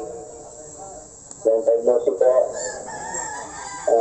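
Rooster crowing: one long call starting about a second and a half in and lasting a little over two seconds.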